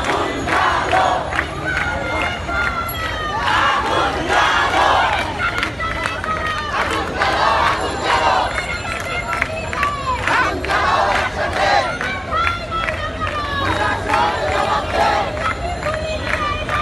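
Dense crowd of protesters shouting, many voices overlapping, with loud calls rising above the din.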